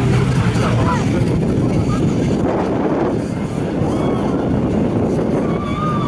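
Portable fire pump engine running steadily at idle, with voices of people talking over it.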